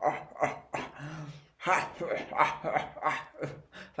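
A man laughing in short voiced bursts, about three a second, with a brief pause about one and a half seconds in.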